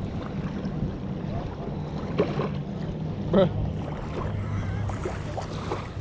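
Steady low drone of a motorboat engine out on the water.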